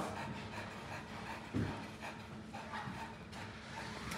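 A pit bull panting softly while holding a down-stay on her bed, with one low thump about a second and a half in. The trainer puts the panting down to the strain of holding herself in one position, not to heat.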